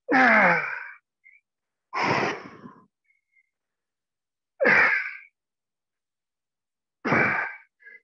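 A man's loud, effortful exhalations, voiced like sighs or grunts, four times about two seconds apart, one with each push-up; the first falls in pitch.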